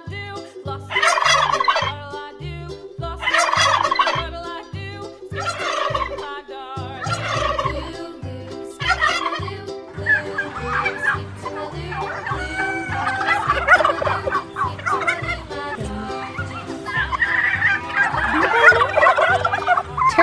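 Turkeys gobbling: five rapid warbling gobbles about two seconds apart, then from about halfway several turkeys calling over one another.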